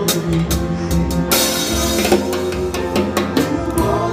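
Drum kit played along to a recorded pop song: snare and cymbal strikes in a steady groove over the backing band. A cymbal rings out about a second and a half in.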